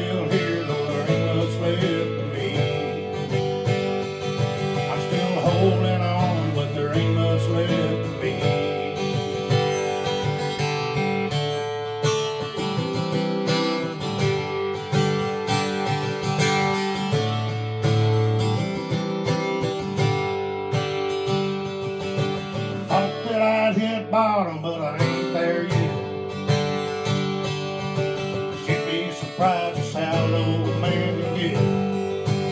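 Acoustic guitar strummed steadily through a chord progression in a country-rock song, with no lead vocal over most of it.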